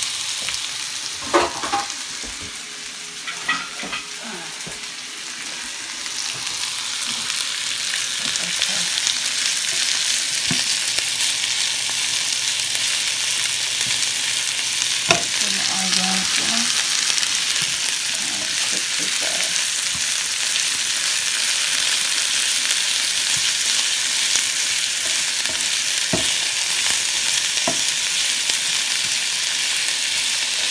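Chicken pieces frying in oil in a pan: a steady sizzle that builds over the first several seconds and then holds. A few sharp knocks sound early on and about halfway through.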